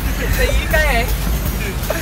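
Car interior while driving through heavy rain: a steady low road-and-engine rumble with the hiss of rain on the windscreen, under a voice talking.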